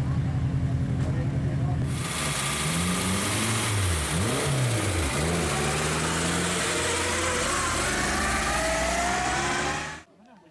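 Lada 2101 rally car's engine: idling steadily, then revved up and down sharply a couple of times around the middle, and climbing steadily in pitch near the end. The sound cuts off suddenly at the end.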